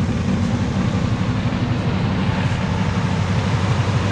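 1965 Mercury Montclair's 390 V8 running steadily just after a cold start, with a loud, rough exhaust note through worn mufflers.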